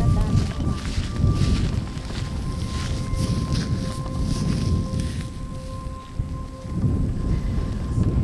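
Wind buffeting an outdoor camera microphone: a rough, gusting low rumble that swells and drops, with a faint steady high tone behind it.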